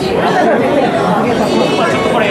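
Many voices talking at once in a large, busy hall: steady overlapping chatter.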